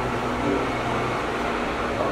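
Steady hum and hiss of background machinery in a café's room tone, between pauses in speech.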